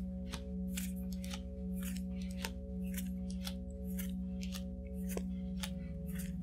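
Playing cards being dealt one by one and laid down on a table: a quick, irregular run of crisp clicks and snaps, about three a second. Under them runs a steady, sustained ambient music drone.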